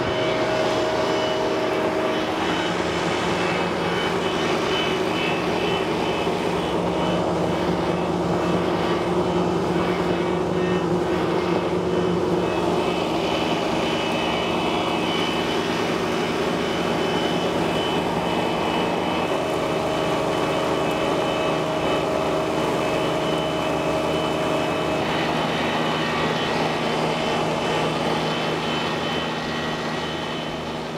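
Electric pulverizer flour mill running steadily, a loud motor drone with the whir of dry ingredients being ground to powder. Its tone shifts slightly a few times partway through.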